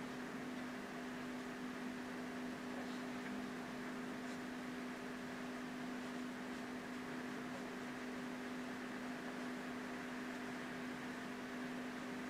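Steady low hum of two constant tones over a soft hiss of room noise.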